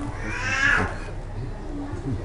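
A single high-pitched animal call, rising and then falling in pitch and lasting under a second.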